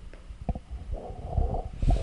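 Low rumbling handling noise on a handheld microphone, with a few soft knocks of chalk against a blackboard as a bracket is drawn.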